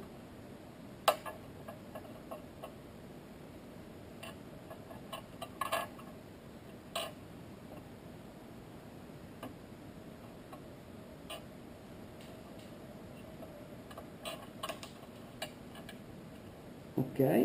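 Faint, scattered clicks and taps of plastic pry tools against an iPhone 4S as its adhesive-glued battery is levered up: one sharp click about a second in, a few more around the middle, and a cluster near the end.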